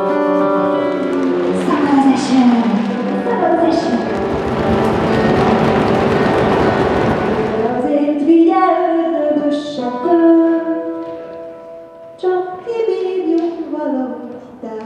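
Voices singing, joined by a swelling hiss of many hands rubbing, patting and clapping to imitate rain, which builds up and then stops sharply about eight seconds in. A woman's singing voice then comes to the fore with long held notes.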